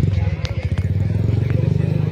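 A vehicle engine idling: a steady, low, pulsing hum, with a few light clicks over it.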